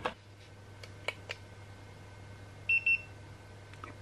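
Handheld infrared thermometer beeping twice in quick succession, two short high tones as it takes a temperature reading. A few faint handling clicks come before it.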